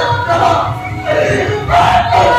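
A bhaona actor's loud, drawn-out declaiming voice.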